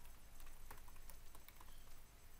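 Faint typing on a computer keyboard: a quick, irregular run of keystroke clicks.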